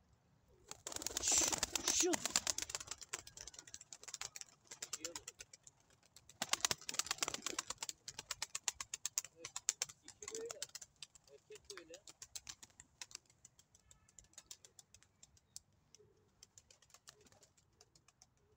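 Domestic tumbler pigeons' wings clattering in fast runs of sharp claps, loudest about a second in and again about six seconds in, then thinning to scattered claps. A few soft pigeon coos are heard between them.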